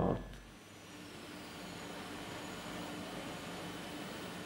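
Steady, faint hum and hiss of a factory room's background machinery and ventilation, settling in about half a second in and holding evenly.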